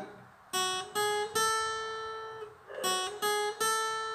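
Acoustic guitar playing single notes on the high E string at frets 2, 4 and 5, a short rising three-note phrase played twice. The last note of each phrase is left to ring.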